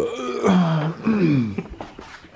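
A man's wordless, drawn-out groan in two parts, the second sliding down in pitch.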